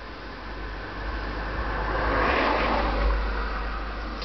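A car passing by: its road noise swells to a peak two to three seconds in and then fades away.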